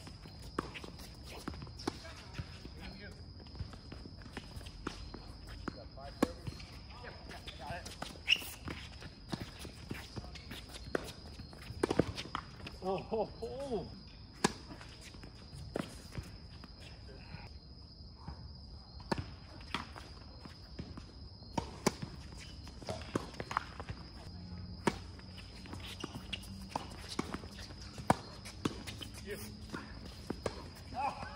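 Tennis rallies on a hard court: sharp racquet-on-ball hits and ball bounces coming in irregular runs, with footsteps and a few brief, faint voices.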